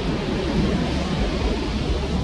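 Erupting volcano giving off a steady, deep rumbling rush of noise with no separate blasts.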